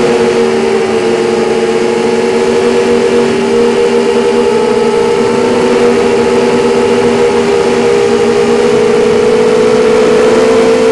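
QAV250 quadcopter's Lumenier 2000kv brushless motors spinning Gemfan 5x3 props in steady flight: a loud multi-tone whine whose pitches waver slightly with throttle, over a constant hiss.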